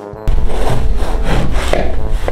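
A knife sawing back and forth through a crusty bread loaf on a wooden cutting board, the crust scraping and crackling. It starts abruptly about a quarter second in, after a moment of brass music.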